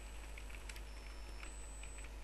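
Computer keyboard typing: a scattering of faint, irregular key clicks over a steady low hum.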